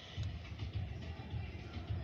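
Music playing, with irregular low thuds and crackles over it from about a fifth of a second in.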